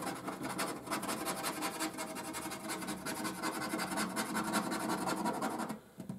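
Rapid scraping strokes as the silver scratch-off coating is rubbed off the number panels of a 20X Cash scratchcard. It is a quick, steady run of scratches that stops shortly before the end.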